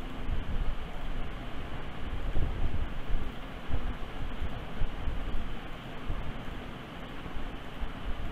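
Steady background noise of the recording: a low rumble with an even hiss, with no distinct events.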